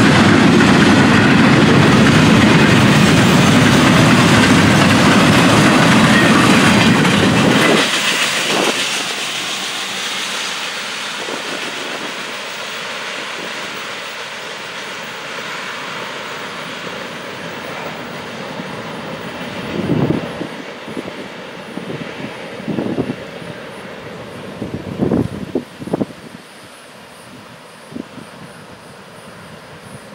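Double-stack intermodal freight cars rolling past on the rails with a steady, dense rumble. The rumble drops sharply about eight seconds in, leaving a quieter rolling noise with a few short knocks near the end.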